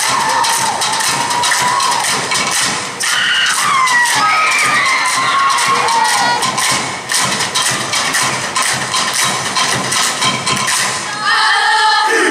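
A Samoan dance group clapping and slapping in a fast run of sharp strikes, with shouted calls and audience cheering over it. The group starts singing together near the end.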